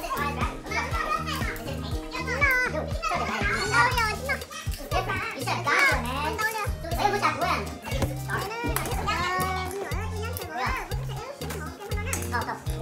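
Lively, overlapping chatter of children and adults over background music with a steady, repeating bass beat.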